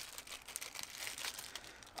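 A small clear plastic bag crinkling as it is handled and turned over in the hands, a steady run of fine crackles.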